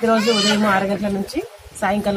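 A woman speaking in a steady, fairly high voice, with a brief pause just past the middle.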